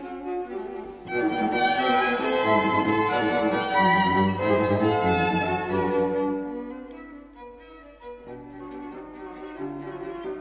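String quartet of violins, viola and cello playing a fast Spanish dance, a tirana. It starts softly, swells loud and full about a second in, and drops back quieter after about six seconds.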